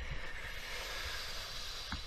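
A steady hiss of noise, ending with a faint click near the end.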